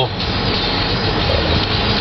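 Steady low rumble and hiss inside a vehicle's cabin as the vehicle sits idling in stopped traffic.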